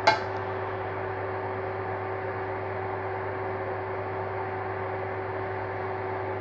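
Steady electrical hum of a running kitchen appliance, holding a few fixed tones, with one sharp click right at the start.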